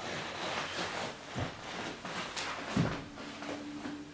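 Cotton karate gi rustling and snapping with bare feet stepping on wooden floorboards during the Tekki Nidan kata, with two heavier foot stamps about a second and a half and about three seconds in.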